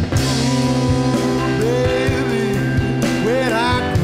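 Rock band playing live: electric guitar over a drum kit with cymbals, a steady low line underneath. A lead line bends up and back down twice, about halfway through and near the end.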